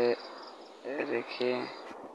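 A man speaking in short, broken phrases, with a faint steady high-pitched whine behind the voice.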